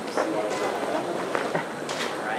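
Indistinct chatter of several voices at once, with a couple of short clicks.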